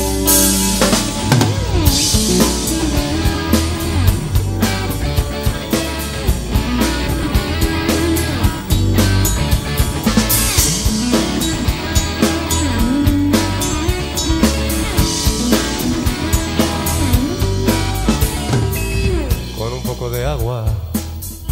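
Live rock band playing the instrumental intro of a song, recorded straight from the mixing desk: full drum kit with regular beats, electric guitars, bass and keyboards.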